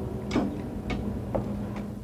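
Four sharp ticks at an even pace, about two a second, over a steady low hum.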